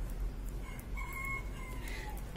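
A rooster crowing once, faint: one long call that falls in pitch at its end.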